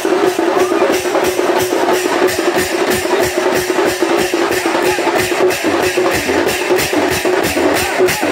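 Sambalpuri baja band playing: drums beating a fast, steady rhythm of about four strokes a second under a reed pipe holding one wavering note.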